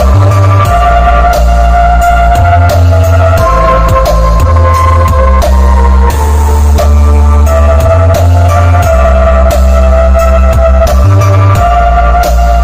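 Music played very loud through giant stacked sound-system speakers. Heavy bass notes change every second or so under a held melody line, with frequent sharp beat hits.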